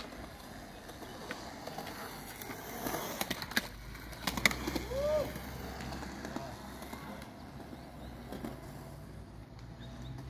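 Skateboard wheels rolling over smooth concrete, with a few sharp clacks of the board about three to four and a half seconds in.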